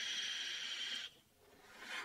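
A long drag drawn through a sub-ohm vape tank: a steady airy hiss for about a second that cuts off suddenly, then a short pause and the start of a soft exhale near the end.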